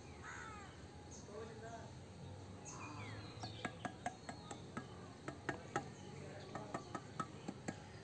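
Steel mason's trowel tapping on a wet concrete bed: a run of sharp, irregular taps, about three a second, through the second half. Faint falling calls come in the first second.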